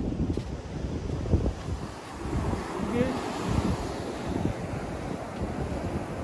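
Wind buffeting the microphone over the steady wash of surf breaking on the beach.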